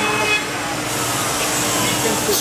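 CNC router machining a wooden part: steady machine noise with a constant hum running underneath.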